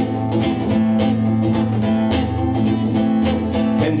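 Solo acoustic guitar strummed in a steady rhythm, an instrumental break between sung verses.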